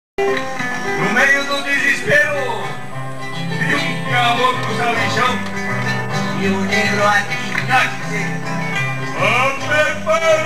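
Acoustic guitars playing a criolla, a Rioplatense folk song: plucked melody notes over accompaniment, with a low bass line coming in about three seconds in.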